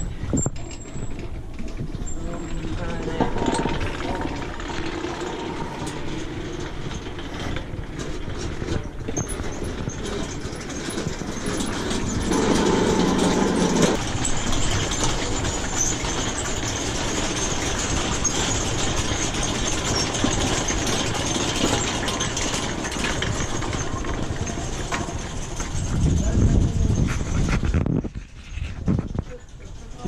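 Wind buffeting the microphone, over the rumbling of a row of metal prayer wheels turning on their spindles as a hand spins them one after another. A louder gust comes near the end.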